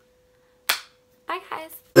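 A single short, sharp snap about a third of the way in, over a faint steady hum.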